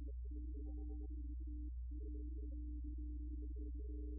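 Church organ playing slow, sustained notes in the middle register over a steady low hum.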